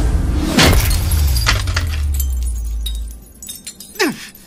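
A mobile phone hurled to a hard floor: one loud smash about half a second in, then small pieces clinking and skittering for the next couple of seconds, over a deep low rumble.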